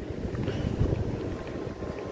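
Wind buffeting the microphone, an uneven low rumble with no clear rhythm.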